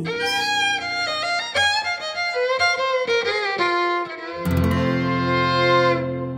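Fiddle playing a quick run of notes over acoustic guitar, then a full closing chord struck about four and a half seconds in, held and left to ring out.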